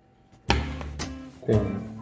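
Background music that starts suddenly about half a second in, with pitched notes and a beat of about two strokes a second.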